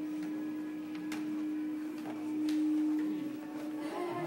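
A steady low hum that swells slightly a little past the middle, with a few light clicks or taps over it.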